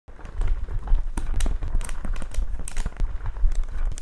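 A rapid, irregular run of sharp clicks and taps, like typing, over a low rumble.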